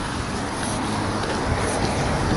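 Cars driving past close by: a steady rush of engine and tyre noise.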